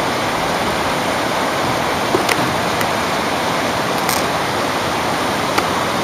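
Steady rush of water flowing through concrete trout-farm raceways, with a few faint clicks.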